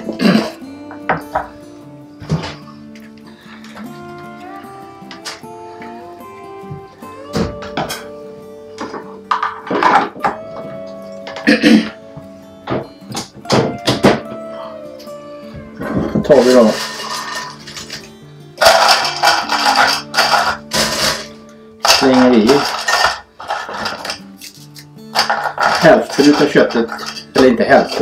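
Background music with steady sustained notes, over repeated clattering and clicking as pieces of dried beef are dropped into a small plastic chopper bowl. The clatter comes in busy clusters in the second half.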